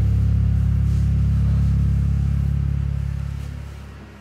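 Karaoke backing track of a rock/metal song ending on one long held low chord that fades out over the last second or so.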